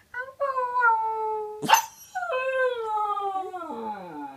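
Husky puppy howling: two long howls, each sliding down in pitch, the second dropping low near the end, with a brief sharp noise between them.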